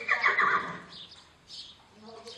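A horse whinnying once, loud, lasting about a second and fading away.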